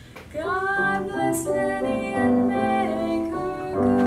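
A girl singing a vocal solo with piano accompaniment. After a brief lull at the start, her voice slides up into a note and carries on through a sung phrase over held piano chords.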